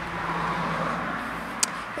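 Outdoor background noise: a steady hiss that swells during the first second and then eases off, with a faint low hum and a single sharp click about one and a half seconds in.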